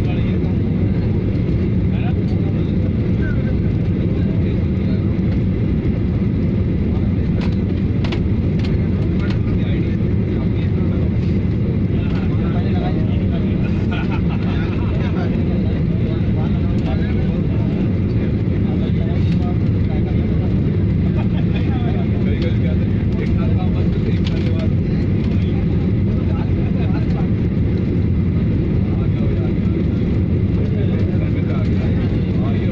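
Steady jet-engine and airflow noise inside an airliner cabin on final approach, a deep, even noise that holds without a break as the plane comes down to the runway.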